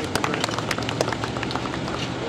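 A small group of people clapping by hand, individual claps audible, the applause thinning out and dying away in the second half.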